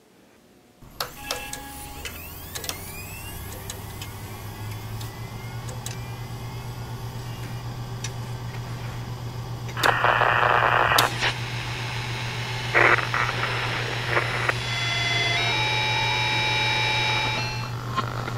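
Tempo SSB ham-radio transceiver receiving: after a click about a second in, a steady hum and static come up, with whistling tones that glide and step in pitch as the radio is tuned. Pushbutton clicks and a short loud burst of hiss come about ten seconds in.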